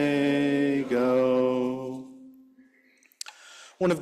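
Voices singing the last long held notes of a hymn, which fade out about two seconds in. A short click follows a second later.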